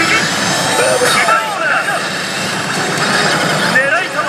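Dense din of a pachislot parlour: slot machines' electronic sound effects and voices, with a thin electronic tone rising over the first second or so.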